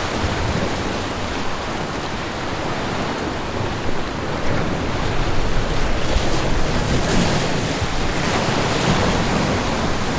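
Ocean surf breaking and washing up a sandy beach, a steady rush that grows louder about halfway through, with wind buffeting the microphone.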